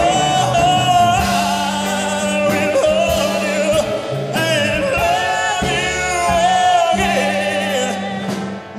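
A live pop-rock band playing a ballad, with bass, drums, keyboards and electric guitar, under a male lead singer who holds long notes with a wavering vibrato.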